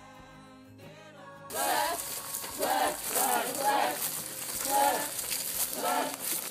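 Background music with held notes, cut off about one and a half seconds in by louder live sound of several young people's voices talking and calling out over outdoor noise.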